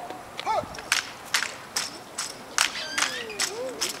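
Sharp, evenly spaced cracks from an armed drill team's rifle drill performed in unison, about two or three a second.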